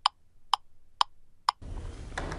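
Ticking sound effect, evenly spaced at about two ticks a second, each tick short and sharp. The ticks stop shortly before the end, when the room tone of the interview comes back in.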